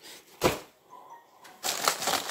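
A sharp crack about half a second in as boxed DeWalt tools are handled, then the clear plastic bags around them crinkling loudly near the end as a bagged tool is grabbed.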